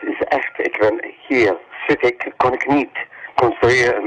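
A voice speaking with no beat under it, sounding thin and narrow like a voice through a radio or telephone: a spoken sample within the album's hardcore tracks.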